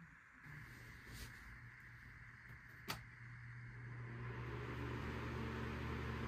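Small electric desk fan switched on: a low motor hum that starts about half a second in and builds steadily louder as the fan spins up, with a single sharp click about three seconds in.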